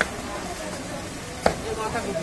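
Butcher's blade chopping goat meat on a wooden log chopping block: two sharp chops about a second and a half apart, the second the louder.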